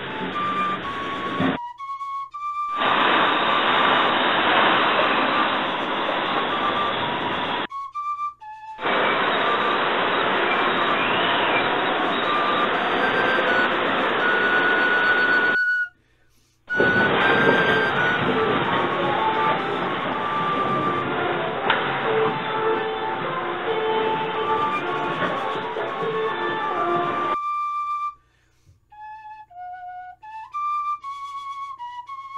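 Tropical cyclone wind and heavy rain heard as a loud, steady noise on the camera microphone, in several clips that cut off abruptly. A tin whistle in D plays a tune over it and is heard alone in the short gaps between the clips.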